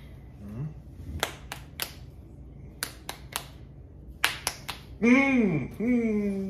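Three rounds of three sharp hand smacks, fists pounding into palms to count out rock, paper, scissors. Near the end, a loud closed-mouth "mm" voice that rises and falls.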